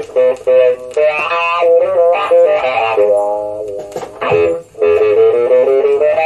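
Recorded electric guitar music playing back through speakers: a melodic lead guitar line in phrases with short breaks between them, from a flamenco-rock fusion guitar piece.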